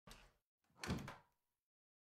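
A door shutting with a thud about a second in, after a short, fainter sound right at the start.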